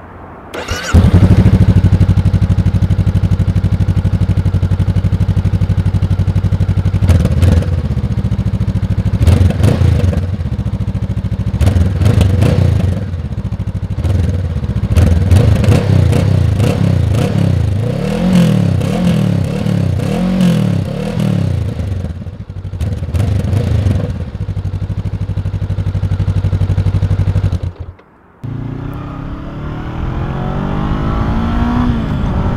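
2022 Honda CB500F's 471 cc parallel-twin starting about a second in and idling steadily, then revved in neutral again and again, its pitch rising and falling in short blips and longer sweeps. Near the end it cuts off abruptly, and the sound of the bike under way follows.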